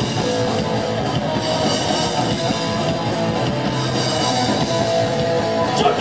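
A rock band playing live: electric guitar and drum kit, loud and continuous.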